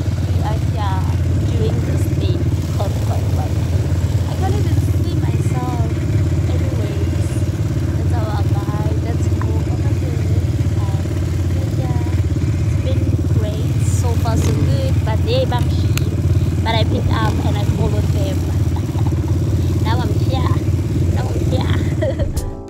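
Quad bike engine running steadily, with people talking over it.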